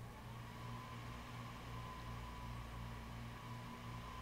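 Faint steady machine hum with a low pulsing drone and a thin high whine that rises slightly at the very start, then holds steady.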